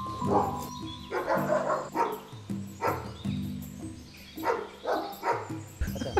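Dogs barking repeatedly, about eight short barks at irregular spacing, over background music with low sustained notes.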